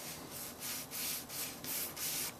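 Sandpaper on a solid-backed sanding stick rubbed back and forth along the edge of a small black model casting, about four short strokes a second, dressing off a burr of casting flash.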